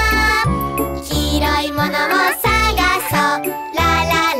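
Children's song: a voice singing over bright, tinkling backing music with a recurring bass note.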